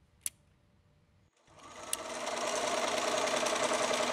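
A single sharp click, then a sewing machine starts stitching about a second and a half in, its rapid steady running swelling up quickly and holding.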